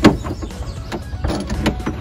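Billet tie-down being slid along a pickup truck's bed rail track: a sharp click at the start, then a few lighter clicks and short scrapes of hardware on the rail.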